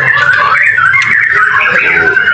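A chorus of caged songbirds chirping and warbling at once, a dense overlapping run of quick whistled notes that keeps going throughout.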